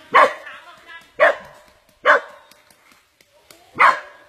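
A dog yelping in pain and distress, four sharp high cries about a second apart with a longer gap before the last, while a snake has hold of it.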